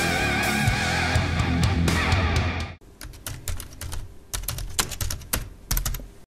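Guitar-led music that cuts off about three seconds in, followed by an irregular run of computer-keyboard typing clicks.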